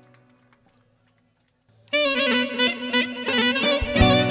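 The band's last held note fades out to near silence; about two seconds in, a clarinet comes in loud with a wavering, ornamented folk melody over steady backing, opening the next tune.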